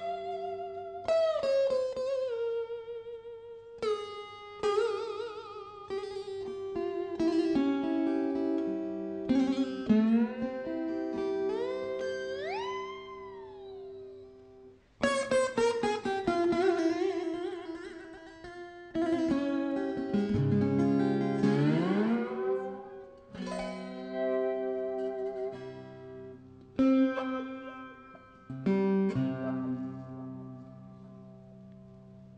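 Small acoustic slide guitar played on the lap with a steel bar: an unaccompanied Indian-style blues melody of plucked notes bent and glided up and down between pitches over steady ringing drone strings. The playing dies away briefly about fifteen seconds in and resumes with a loud new attack.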